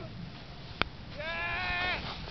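A person's long, high-pitched whooping call, held steady for nearly a second from just past the middle, with a sharp click shortly before it and a low rumble of wind on the microphone beneath.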